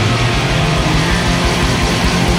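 Live rock band playing loudly: electric guitar over bass and drums in a stretch with no singing.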